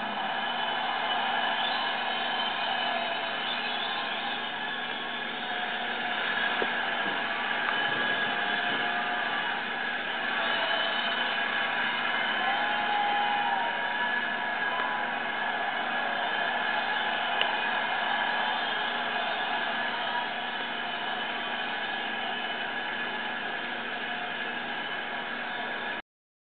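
Stadium crowd giving a sustained standing ovation, a steady wash of cheering and applause heard through a television speaker.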